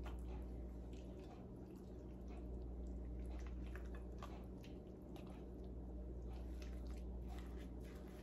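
A spoon stirring thick, creamy spinach dip in a glass bowl: faint wet squelches and small irregular clicks as it is folded through.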